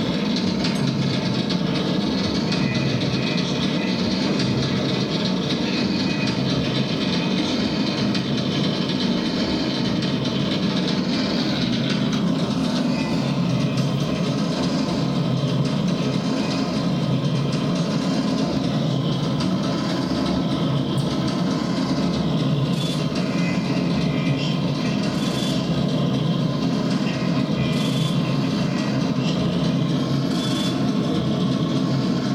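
Harsh electronic noise from a feedback loop run through delay, echo and distortion pedals: a dense, steady drone heaviest in the low range, with no beat. The upper hiss thins a little about twelve seconds in.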